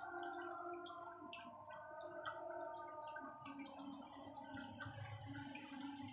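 Faint aquarium water trickling from a pipe, with a wavering bubbling tone and scattered drips.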